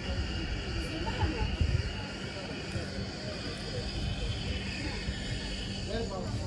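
Outdoor ambience: faint background voices over a steady high-pitched drone, with low wind rumble on the microphone.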